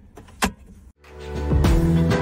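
A single sharp click from the pickup's center console storage compartment as it is worked by hand, then end-card music fades up about a second in and runs on loud.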